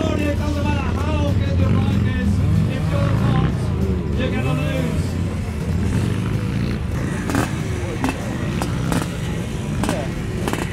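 Dirt bike engines revving up and down as the bikes launch and ride a grass course, with a few sharp knocks near the end.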